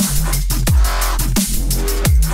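Electronic drum-and-bass style track playing: kick drum hits with a quickly falling pitch, about 0.7 s apart, over a sustained deep bass line and crisp hi-hats. The kick and bass are being EQ'd live so that the kick stands out against the bass line.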